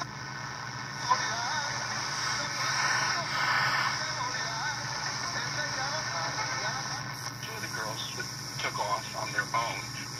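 A 1964 Arvin eight-transistor AM pocket radio playing a medium-wave broadcast through its small speaker: a voice and some music over steady hiss and hum.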